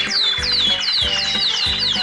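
Cartoon background music with a steady beat and held tones, overlaid by a quick run of high falling chirps, about four a second.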